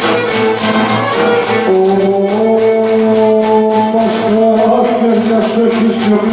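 Cretan lyra bowing the melody of a sousta dance tune over a Cretan laouto strummed in a steady, quick beat, with long held notes.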